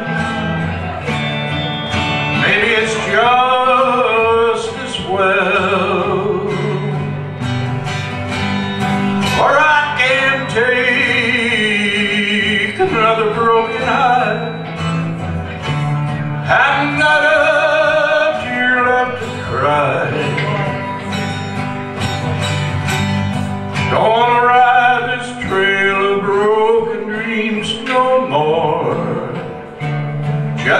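Country song played live on two acoustic guitars: steady strummed chords with a melodic line that bends up and down in phrases of a few seconds.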